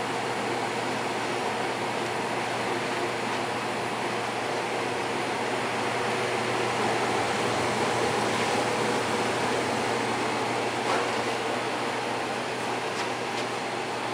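Steady hum and rush of air from a running atmospheric gas furnace and its blower fan, with one light click about eleven seconds in.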